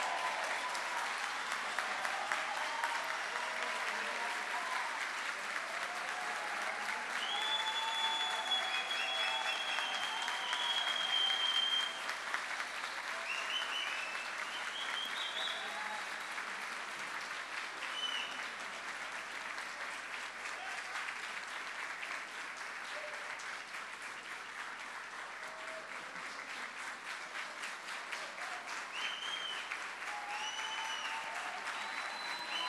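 Large audience applauding in a long, steady round of clapping, with a few voices cheering over it; the clapping eases slightly after about twelve seconds.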